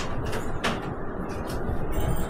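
A few light clicks and knocks from a cupboard being rummaged through, the clearest about two-thirds of a second in, over a steady low rumble.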